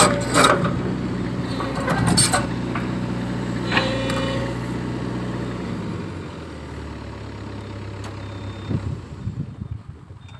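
Sumitomo excavator's diesel engine running steadily, with a few clanks in the first couple of seconds. About six seconds in the engine note drops and runs quieter.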